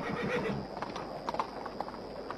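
Horse hooves clopping unevenly on hard ground, with a brief faint whinny at the start.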